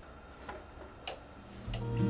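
Two light clicks, about half a second apart, from handling a metal table lamp as it is moved and set down. Guitar music fades in near the end.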